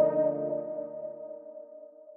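Held synthesizer chord of a cloud rap beat slowly fading out, with no drums. The low notes drop out about a second and a half in.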